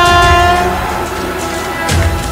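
Indian Railways locomotive horn held on one steady chord over the low rumble of an approaching train, dropping away less than a second in. The rumble and fainter horn tones carry on, with a sharp knock near the end.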